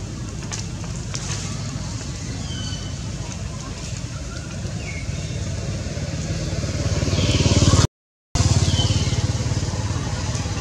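A motor running steadily with a low rumble, growing louder toward the eighth second. The sound cuts out completely for about half a second, then the motor resumes. Short, faint, high falling chirps come now and then over it.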